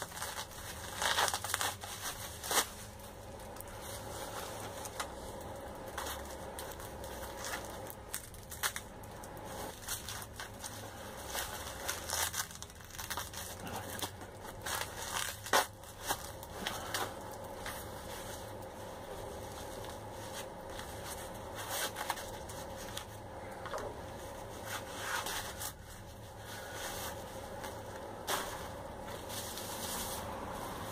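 Plastic packing wrap and bubble wrap being crumpled, crinkled and torn off by hand, in irregular crackles and rustles.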